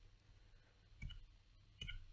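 Near silence with two faint, short clicks, one about a second in and one near the end.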